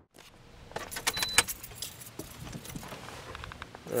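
A bunch of keys jangling and clicking, densest about a second in, with a short high beep among the jangles.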